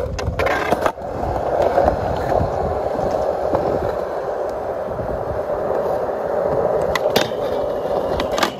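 Skateboard wheels rolling steadily over rough concrete, after a clatter about half a second in as the board goes down. Near the end, sharp clacks as the board pops up onto a low metal rail for a feeble grind.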